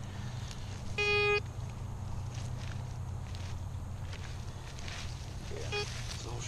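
Metal detector giving one short, steady beep about a second in as its search coil passes over the dug hole, signalling a metal target.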